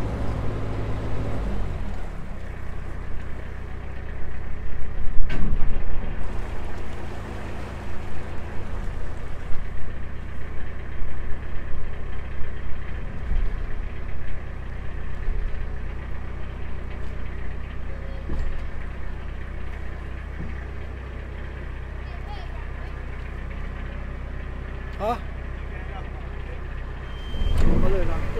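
Narrowboat engine running steadily at low revs as the boat moves into the lock, with one loud knock about five seconds in.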